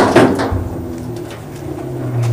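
A sharp knock, then the low electrical hum of Fisher & Paykel Smartdrive washing-machine motors whose drums are being turned by hand. The two motors, wired in parallel as a synchronised three-phase generator and motor, hum more and more quietly as the drums slow down.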